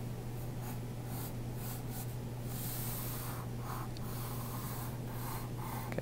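Faint scratching of a graphite pencil on paper as a bubble letter is outlined in short strokes, over a steady low hum.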